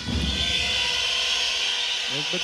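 Arena crowd at a volleyball match, loud and steady, cheering and whistling, with low thumps in the first half second.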